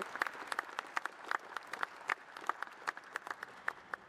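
Scattered applause: a fairly small audience clapping, heard as many separate, irregular claps rather than a continuous wash.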